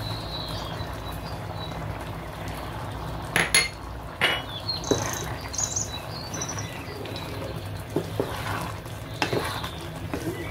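Chickpea curry simmering and bubbling in a frying pan while a wooden spatula stirs it. The spatula knocks sharply against the pan a few times.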